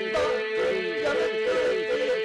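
Albanian folk singing: an ornamented melody line that bends and wavers over a steady held drone.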